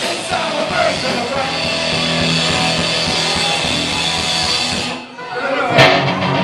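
Punk rock band playing live: loud electric guitar and drums with vocals. The music drops out briefly about five seconds in, and a single sharp hit, the loudest sound, comes just before the guitar starts up again.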